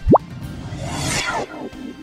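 Logo-animation sound effects: a quick rising pop as a logo tile drops in, then a shimmering whoosh about a second in that sweeps downward and fades. A soft music bed runs underneath.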